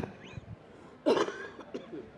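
A person coughs once, sharply, about a second in, after a brief laugh at the start.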